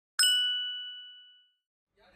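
A single bright chime, struck once and ringing out with a clear high tone that fades away over about a second: a logo sound effect.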